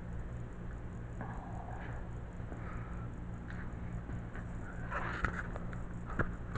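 Quiet handling noises, faint rustling with a few light clicks near the end, over a steady low hum.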